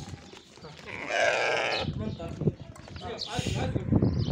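Sardi sheep bleating: one loud bleat about a second in, lasting under a second, and a fainter call a little after three seconds.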